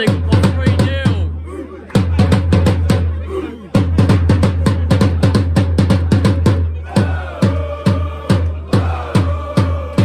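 A large bass drum beaten fast with two mallets, each stroke a deep boom, with two short breaks in the first four seconds. From about seven seconds in, voices chant along over the drum.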